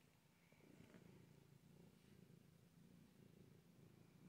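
Domestic cat purring faintly and steadily while being stroked, the purr starting about half a second in.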